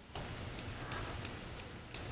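A run of about five light, sharp clicks or taps, irregularly spaced about a third of a second apart, over background noise that rises just after the start.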